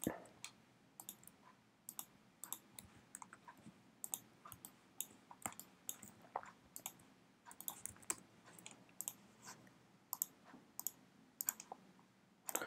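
Faint, irregular clicks of a computer mouse, roughly one or two a second, in scattered clusters.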